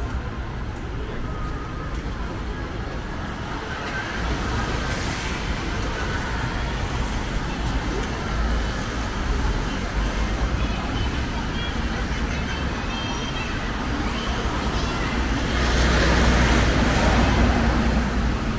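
City street ambience: steady traffic noise with passers-by talking. A vehicle passes and grows louder near the end.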